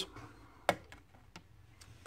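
Thin steel tension wrenches clicking lightly against each other as they are handled: one sharp click under a second in, then two fainter ticks.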